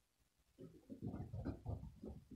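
A quiet voice making a quick run of short, low, wordless sounds, starting about half a second in.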